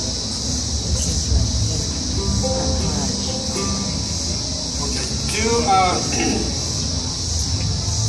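Cicadas singing in a continuous high-pitched drone. Under it, a few scattered plucked oud notes ring out while the instrument is being tuned, and a man clears his throat and starts to speak about five seconds in.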